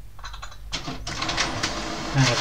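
HP 3830 inkjet printer starting a print job: mechanical whirring broken by a run of clicks, growing louder a little under a second in.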